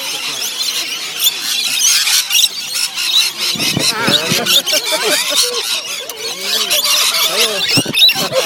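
A flock of rainbow lorikeets screeching and chattering in a dense, overlapping chorus. The calls get louder and closer from about halfway through, as the birds crowd onto a feeding bowl.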